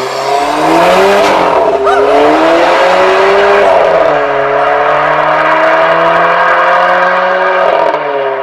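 Alfa Romeo Giulietta Veloce S's 1750 TBi turbocharged four-cylinder engine accelerating hard as the car pulls away. The pitch climbs and drops back at gear changes about two and four seconds in, then rises slowly as the car draws away.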